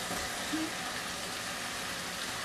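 Chicken gizzards and vegetables sizzling steadily in a multicooker pot on its frying program, just after the gizzards were added.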